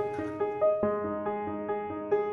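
Background piano music: a melody of single notes struck a few times a second, some held and fading.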